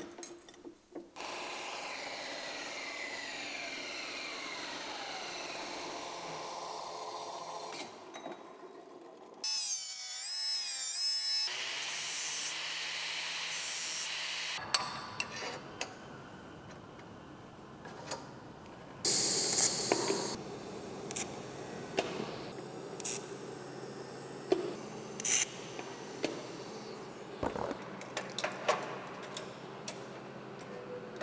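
Horizontal bandsaw cutting stainless steel tube, starting about a second in and running steadily for about seven seconds. After it comes a run of mixed shop noise with many sharp clinks and knocks of metal parts being handled.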